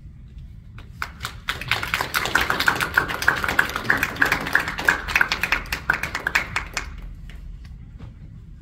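Small audience applauding, starting about a second in and dying away near the end.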